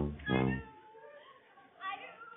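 A voice holding drawn-out pitched notes over a deep low backing, ending about half a second in. After that it is quieter, with a brief voice near the end.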